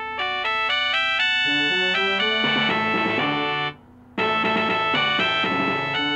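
Keyboard music with sustained, organ-like notes moving in steps, breaking off briefly about four seconds in before the next phrase starts.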